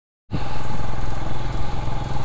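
Royal Enfield motorcycle engine running steadily as the bike rides along, heard from the rider's seat. The sound cuts in about a quarter of a second in.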